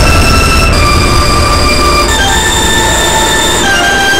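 Black MIDI piano rendering through a Steinway D-274 piano soundfont: so many piano notes at once that they merge into a loud, noisy roar, with sustained high chord tones shifting every second or so. The heavy low rumble thins out about halfway through as the note density drops.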